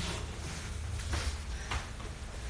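Low steady rumble in the room, with a few short soft knocks, like steps on a studio floor.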